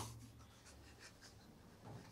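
Near silence: room tone with a low steady hum and faint rustling, a little louder near the end.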